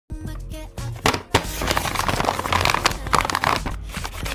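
Background music with held notes. From about a second and a half in, a dense crinkling rustle of a paper bag being handled, full of small sharp crackles, covers it and stops just before the end.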